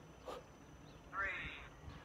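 A woman's high, drawn-out vocal sound of effort, about half a second long, a little past halfway, made while straining to hold her legs up in a leg raise.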